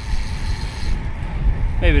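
Wind buffeting the camera's microphone on a moving road bike: an uneven low rumble with a lighter hiss above it that drops away about halfway through. A man's voice starts near the end.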